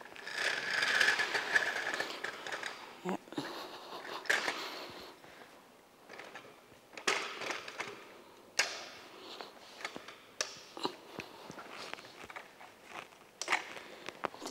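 Tripod leg flip-lock latches being snapped open and shut, with the metal leg sections sliding. There is a scraping rustle over the first couple of seconds, then a series of separate sharp clicks.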